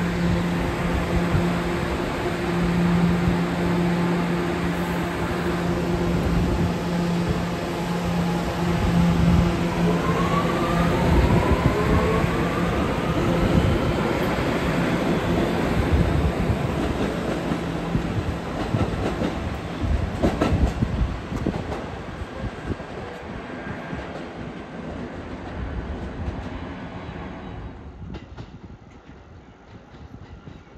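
New York City Subway train running alongside the platform with a steady electric hum and wheel noise. Its motor whine rises in pitch as it picks up speed, and the noise fades over the last third.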